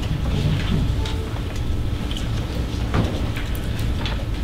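Meeting-room background: a steady low hum with faint murmured voices and a few small clicks, one sharper about three seconds in.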